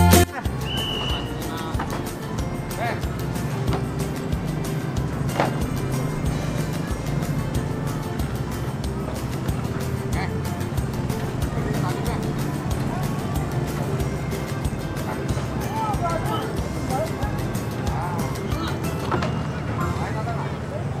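Background music cuts off right at the start, leaving outdoor ambience: a steady low rumble with faint distant voices now and then, a few near the end.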